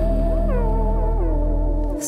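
Music: an instrumental passage of a downtempo trip-hop song, with a sustained deep bass under a lead line that swoops and bends in pitch. The bass drops out briefly right at the end.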